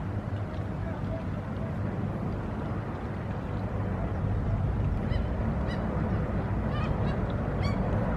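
A steady low rumble throughout, with a few short honking bird calls starting about five seconds in.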